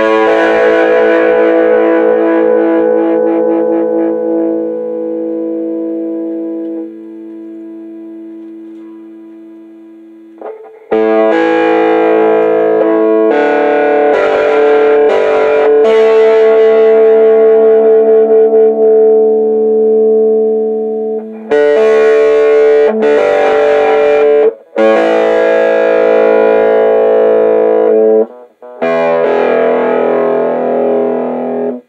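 Homemade spruce-body electric guitar with a single-coil Strat-type pickup, played through distortion. A chord is struck and left to ring, fading over about ten seconds, then a run of strummed, sustained chords follows, broken by a few short gaps.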